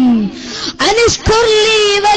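A boy's voice through a stage microphone, drawing out words in long sung notes in the melodic, chanting style of an Islamic sermon. A held note falls away just after the start, there is a short break, and a second long, slightly wavering note begins about a second in.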